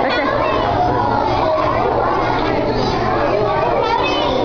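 Many children chattering at once in a crowded school cafeteria, a steady din of overlapping voices.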